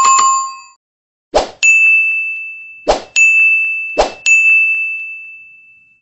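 Notification-bell ding sound effect, then three short hits, each followed by a bright chime that rings out and fades over a second or more.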